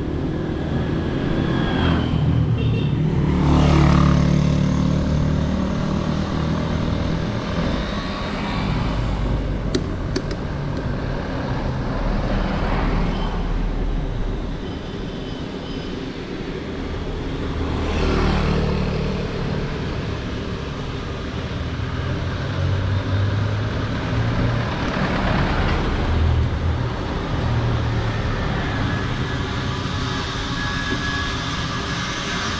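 A vehicle's engine running with road noise while driving along a city street, the engine note rising with acceleration a few seconds in, again about halfway through, and once more later on.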